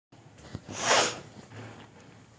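A single short, loud, breathy burst from a person about a second in, like a sneeze or a sharp exhale, with no voiced tone in it.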